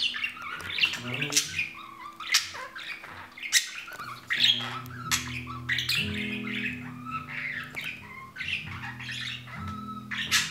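Budgerigar chattering and squawking in short, rapid calls, mixed with sharp clicks. Background music with steady low notes comes in about halfway through.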